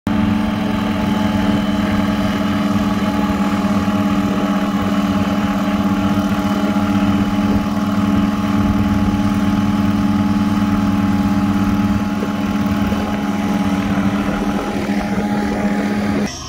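Engine of a small single-engine propeller plane running steadily as it taxis, a loud steady hum with a higher whine above it. It gets a little quieter over the last few seconds as the plane moves away.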